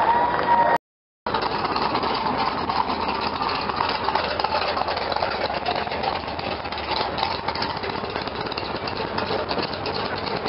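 Engine of a lifted off-road truck on big tyres running steadily as it creeps past at low speed, with a brief cut to silence about a second in.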